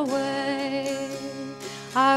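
A woman singing a folk ballad, holding the last sung note of a line for over a second as it fades, over plucked-string accompaniment; a new sung line begins at the very end.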